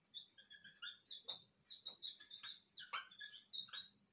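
Dry-erase marker squeaking on a whiteboard while writing: a quick, uneven run of short high squeaks and light taps of the tip, several each second.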